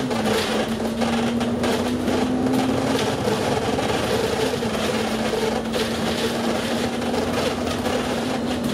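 Inside a moving double-decker bus: its running engine and driveline give a steady whine that steps down slightly in pitch twice, over road noise and light cabin rattles.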